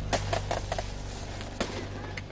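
Gunshots in a quick irregular volley: about five sharp cracks in the first second and one more about one and a half seconds in, over a steady low hum.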